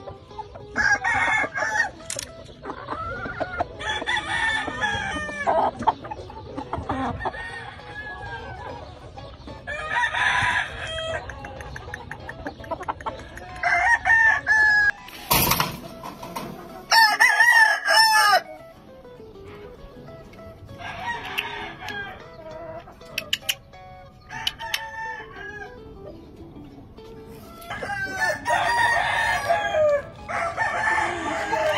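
Gamefowl roosters crowing again and again, about seven crows a few seconds apart, with clucking in between. A brief burst of noise comes midway.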